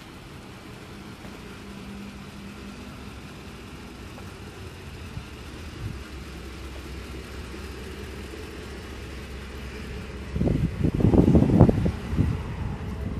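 Wind on the microphone over a low steady outdoor rumble, breaking into loud, irregular buffeting gusts near the end.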